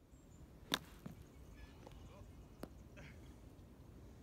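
Faint outdoor background broken by a few sharp clicks: a loud one just under a second in, a weaker one just after, and another about two and a half seconds in.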